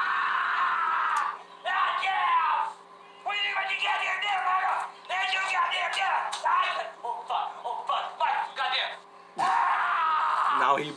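A man screaming and yelling in a string of wordless cries of pain, from stepping barefoot in a pan of still-hot hamburger pie spilled on the floor.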